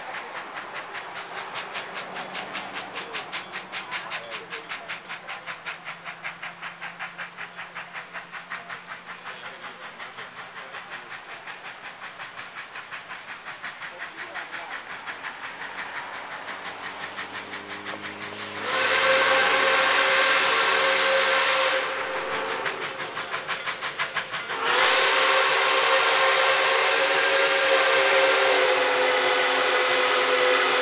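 Nickel Plate Road 765, a 1944 Lima-built 2-8-4 Berkshire steam locomotive, approaching with a steady rhythm of exhaust chuffs. About two-thirds of the way in, its whistle blows a loud chord of several notes for about three seconds. The chuffing comes back briefly before a second long whistle blast starts and holds to the end.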